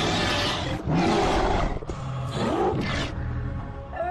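Music with loud animal roars laid over it: three growling roars of about a second each, one after another.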